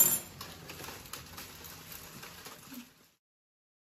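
A sharp clink of kitchen utensils right at the start, then faint clatter and handling noises. The sound cuts off completely about three seconds in.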